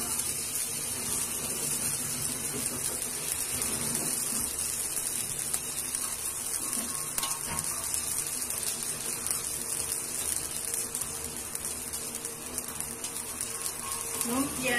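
Sardine spring rolls frying in shallow hot oil in a wok, a steady sizzling hiss.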